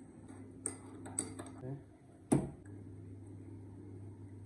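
Light clinks and knocks of a spoon and ceramic mug being handled on a kitchen counter, then one heavier knock a little over two seconds in.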